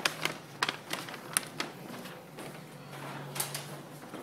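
A quick, irregular run of sharp clicks and taps, several to the second, thinning out after about a second and a half, followed by a faint low steady hum.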